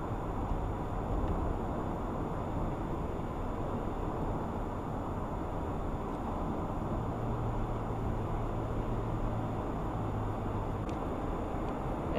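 Steady road noise inside a moving car's cabin: tyres on asphalt and the engine's low drone, an even rumble with a low hum that grows a little stronger for a few seconds past the middle.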